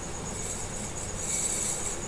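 A steady high-pitched trill of insects, pulsing about ten times a second, over faint background hiss.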